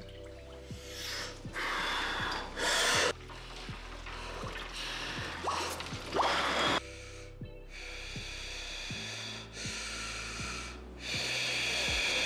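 Sharp gasps and heavy breathing from a man lowering himself into a cold plunge tub, reacting to the cold water, over background music with a steady bass beat.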